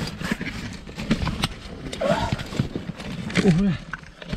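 A caver crawling through a tight rock crevice: his jacket and helmet scrape against the rock and loose stones knock and clatter in many short, irregular clicks.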